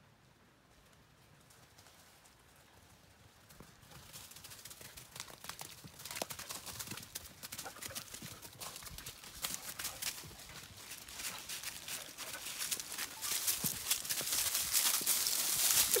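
Near silence at first, then from about four seconds in, steps crunching and crackling through dry fallen leaves. The steps grow steadily louder and closer toward the end.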